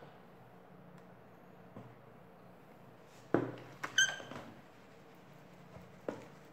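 A filled plastic tray being handled on a stone countertop: one sharp knock about three seconds in, then a short high squeak of plastic being rubbed, over a faint steady hum.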